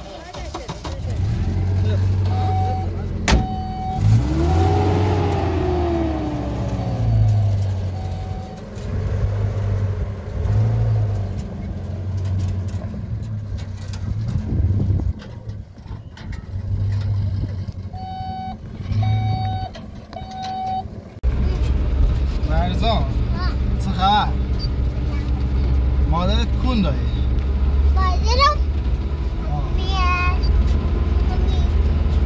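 Pickup truck engine running unevenly at low revs, with one rise and fall in revs and a few short beeps. About two-thirds of the way in, the sound turns into the steady low rumble of the truck driving, heard from inside the cab.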